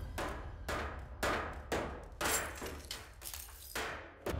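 Repeated smashing blows from a horror film's soundtrack, a run of sharp impacts about two a second.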